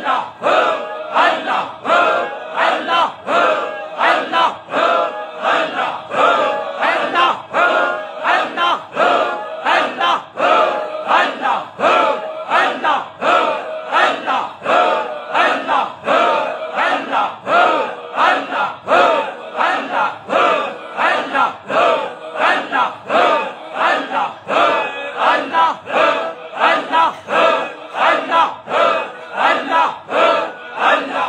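A group of men chanting in unison in fast, even pulses of about two a second, a loud collective dhikr repeated without a break.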